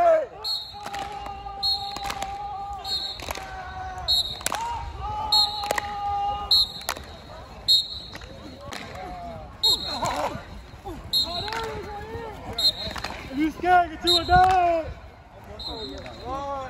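A football team's pre-game warm-up: players clapping in a steady rhythm, about three claps every two seconds. Over the claps come long drawn-out shouted calls, then shorter yells near the end.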